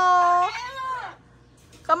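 Blue-fronted amazon parrot giving one long, held call that bends slightly in pitch and stops about a second in.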